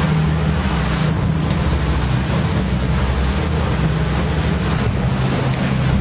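A boat's engine running at a steady low hum, under rushing wind on the microphone and the splash and wash of choppy sea water.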